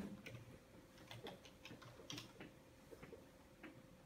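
Faint, irregular clicks and scratches of a dry-erase marker writing on a whiteboard.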